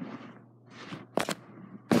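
Handling noise on a phone's microphone: a soft rustle, then two quick sharp knocks a little over a second in, and a loud rub of fabric against the phone starting near the end.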